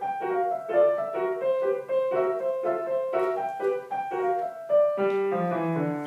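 Solo piano playing a contemporary piece: a repeating figure of short, separate notes in the middle register, then a line of notes stepping downward near the end.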